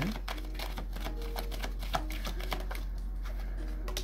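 A deck of tarot cards being shuffled and flicked by hand, with cards dropped onto a table: a quick, uneven run of small clicks, with a sharper card snap near the end.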